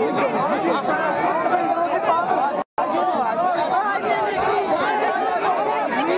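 A dense crowd talking all at once, many voices overlapping into a steady babble. The sound cuts out completely for a split second a little under halfway through.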